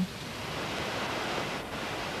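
Ocean surf washing onto a beach, a steady rushing noise.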